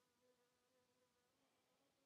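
Near silence: only a very faint steady hum.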